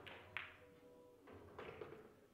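Pool cue tip striking the cue ball with one sharp click, then, about a second later, a few softer clacks as the cue ball runs into an object ball.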